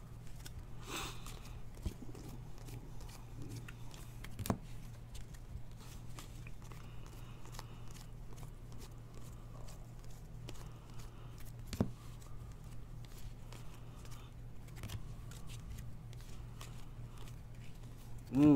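Glossy trading cards being slid and flipped through by hand, one after another: faint scattered clicks and rustles with two sharper clicks, a few seconds in and again near the middle, over a steady low hum.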